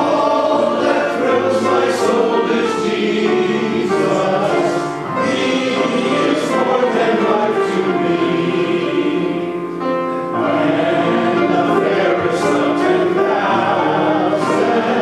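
Church congregation singing a hymn together, with a man's voice leading at the microphone. The singing pauses briefly between phrases, about five and ten seconds in.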